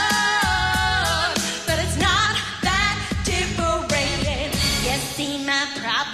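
Pop song: a sung vocal over a backing track with drums and bass, the singer holding a long note in the first second.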